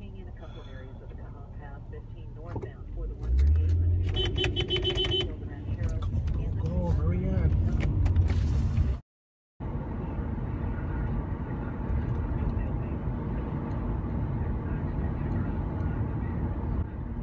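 Car engine and road noise heard from inside the cabin. The engine revs up about three seconds in as the car pulls away, and a short pulsing tone follows. After a brief dropout, steady driving noise carries on.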